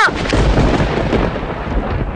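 A thunderclap with heavy rain: a deep rumble breaks in suddenly and slowly fades.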